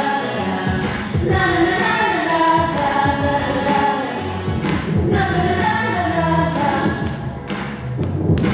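A stage-musical number: several voices singing a melody together over instrumental accompaniment, with a few sharp percussive hits.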